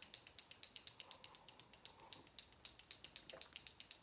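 A small SeneGence LipSense liquid lip-colour tube shaken by hand to mix it, giving a fast, even run of light clicks, about six a second.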